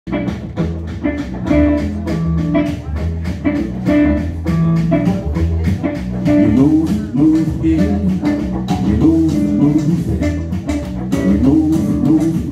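Live blues-rock band playing: electric guitars over bass and drums with a steady beat. About halfway through, a guitar plays a lead line with pitch bends.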